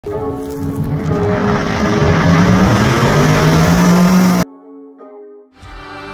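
Pontiac G8 GT's V8 exhaust at wide-open throttle, running hard with a slowly rising note, cut off abruptly about four and a half seconds in. Background music follows the cut.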